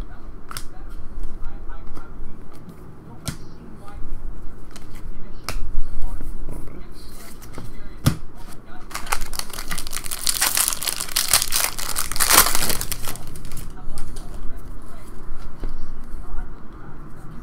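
A few sharp clicks of trading cards being handled, then a foil trading-card pack wrapper being torn open and crinkled for about four seconds, starting around nine seconds in.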